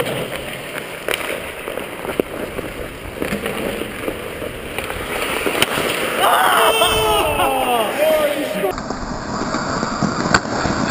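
Hockey skates scraping and carving on the ice, with a few sharp clacks of stick and puck. From about six seconds in, players' voices shout on the ice.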